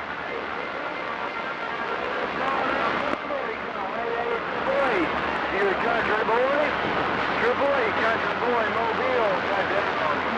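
CB radio receiver hissing with band static, with faint, garbled voices of weak long-distance stations coming through the noise from about four seconds in.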